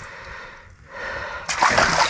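Water splashing in a hole in the ice as a released walleye kicks free and swims down, with a sudden burst of splashing about one and a half seconds in after a quieter start.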